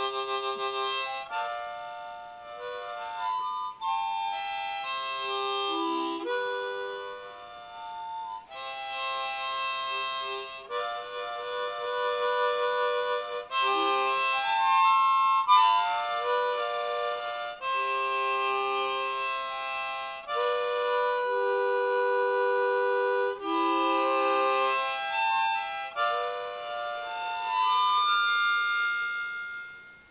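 Harmonica played solo: a slow melody of held notes and chords, in phrases broken by short pauses.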